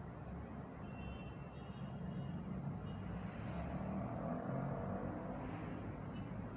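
Steady low background rumble, getting slightly louder about halfway through, with a few faint high tones about a second in.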